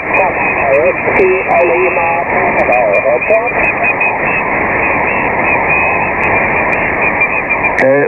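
Single-sideband shortwave reception on the 40 m band through a Kenwood TS-590 transceiver: a distant station's voice, weak and garbled under static and interference, for about the first three and a half seconds, then only hiss and band noise. The signal is hard to copy; the call sign it is sending is not made out.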